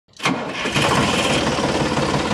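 A tractor-type engine running steadily, starting abruptly about a quarter second in.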